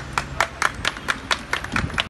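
A small group clapping in a steady rhythm, about four to five claps a second.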